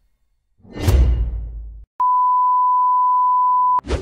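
Intro sound effects: a whoosh with a deep rumble, then after a moment's gap a steady, high pure-tone beep held for almost two seconds that cuts off abruptly, followed by a short swish near the end.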